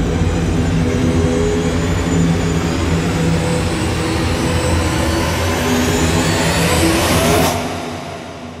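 A loud, dense drone of trailer music and sound design, with sustained low tones under a noisy wash. It cuts off suddenly about seven and a half seconds in.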